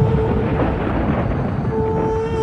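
Film-trailer soundtrack: a loud rumbling swell of noise, a sound-design effect, rises over a dark held-note score. The held notes drop out under the rumble shortly after the start and come back near the end.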